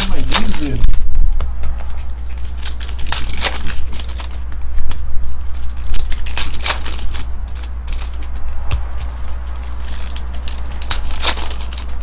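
Foil wrappers of baseball card packs being torn open and crinkled by hand: a run of irregular sharp crackling rustles, over a steady low hum.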